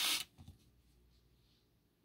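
A brief rustling scrape of trading cards being slid and handled at the very start, with a faint tick about half a second in, then near silence.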